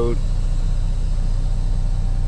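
Kenworth T680 semi truck's diesel engine idling, a steady low hum heard from inside the cab.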